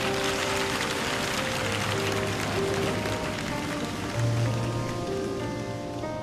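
Instrumental intro of a slow pop ballad: held keyboard chords over slow, sustained bass notes. A soft hiss sits over the music, strongest in the first seconds and fading away.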